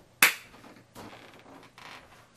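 A single sharp smack of a hand about a quarter second in, with a short ringing tail, followed by softer rustling noise.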